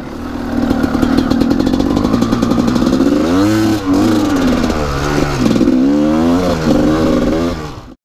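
2005 Gas Gas EC 250 two-stroke enduro engine running while being ridden, steady for the first few seconds, then its revs rising and falling repeatedly as the throttle is worked from about three seconds in.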